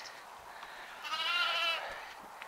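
A Romanov sheep bleating once, a wavering call of just under a second that starts about a second in.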